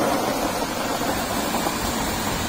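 Dry shallot seed bulbs and their loose skins pouring out of a plastic basin into a tub: a steady, grainy rattle.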